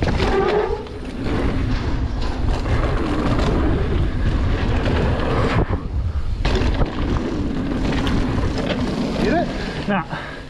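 Mountain bike rolling fast down a dirt singletrack. Tyre noise on the dirt and wind on the camera microphone run throughout, with the bike rattling over bumps. The noise dips briefly about six seconds in.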